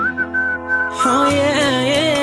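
Background pop music: a high, steady whistle-like melody note, then a gliding melodic line comes in about a second in.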